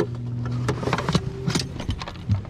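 A steady low motor hum that cuts off near the end, with several sharp knocks and thumps as a just-landed bass is handled over the boat's deck.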